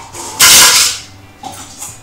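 Contents of a small glass bottle tipped into a plastic jug: a single short, loud rush of noise lasting about half a second, starting just under half a second in.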